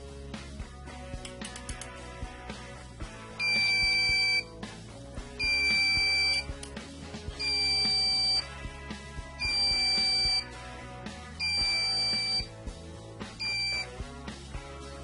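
Electronic buzzer on a home-built Arduino board sounding a steady high-pitched beep about a second long, repeating every two seconds six times: a test sketch running on the board. Background music plays throughout.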